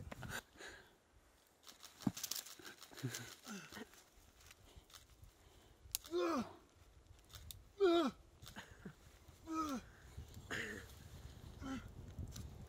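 A man grunting with effort through a set of pull-ups: four short grunts, each falling in pitch, about one and a half to two seconds apart, starting about six seconds in.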